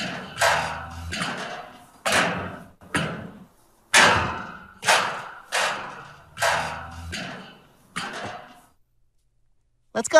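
A series of heavy thuds, roughly one a second, each ringing briefly as it dies away. They stop about a second before the end.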